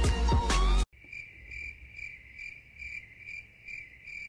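Background music cuts off suddenly about a second in. Crickets then chirp steadily in a quick pulsing rhythm: the comic 'crickets' sound effect for an awkward silence.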